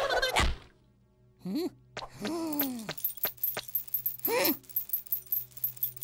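Cartoon sound effects for a small chick character: a spinning whoosh that stops about half a second in, then short squeaky wordless vocalizations, one brief rising-and-falling chirp, a longer falling whine, and another chirp near the middle. A run of quick light ticks, a few per second, carries on under them through the second half.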